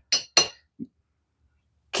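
Two quick metallic clinks of a steel ball-peen hammer head knocking against a small steel anvil, a quarter second apart, each with a short high ring.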